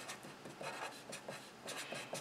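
Black Sharpie felt-tip marker writing on paper: a run of faint, short scratching strokes as symbols are written out.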